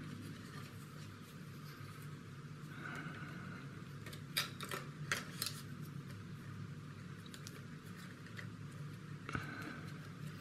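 Plastic model-kit parts being handled: a few light clicks in quick succession around the middle, over a steady low hum.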